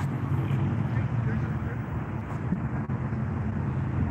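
Outdoor street ambience: a steady low rumble of road traffic, with no single event standing out.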